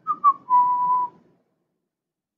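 A person whistling a short phrase: a few quick notes stepping down in pitch, then one held note that stops about a second in.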